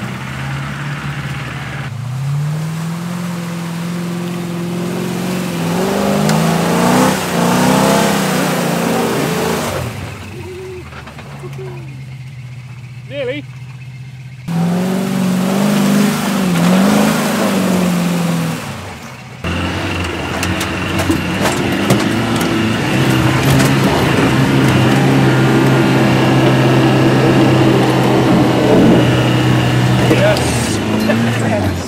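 Land Rover engines revving and labouring off-road in mud and on a steep bank, the pitch rising and falling, over several abrupt cuts. The last stretch is a steady engine drone.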